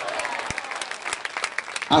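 A church congregation applauding, the clapping slowly fading.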